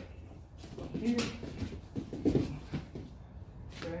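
Single-leg takedown on a foam wrestling mat: scuffling feet, then a quick cluster of thuds about two seconds in as the partner's body drops onto the mat, with a short vocal sound at the same time.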